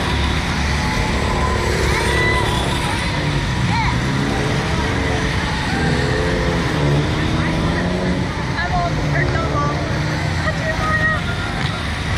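Wind rumbling on a microphone mounted on a Slingshot reverse-bungee ride capsule as it swings, with voices mixed in, clearest a few seconds in.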